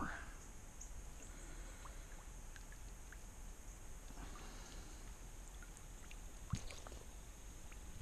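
Faint sloshing and trickling of shallow creek water around a wading angler, with one sharp tick about six and a half seconds in.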